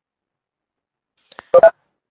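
Near silence, then a faint click and two short, loud electronic beeps in quick succession about a second and a half in.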